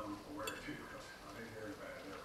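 A faint voice talking in the background, too low to make out words, with a single sharp click of a metal fork against a ceramic plate about half a second in.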